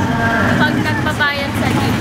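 A girl's voice talking over the steady hum of road traffic.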